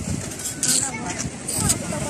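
Indistinct chatter of several voices, with two short hissing noises in the middle.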